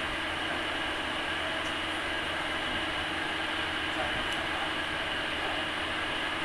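Steady whoosh and hum of an electric air cooler's fan running at constant speed, with a couple of faint small clicks.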